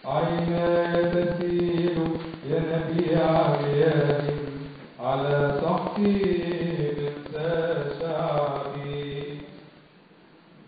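A man chanting a Coptic liturgical reading solo, in long melismatic phrases with held, ornamented notes. The first phrase ends about halfway through, a second follows, and it trails off just before the end.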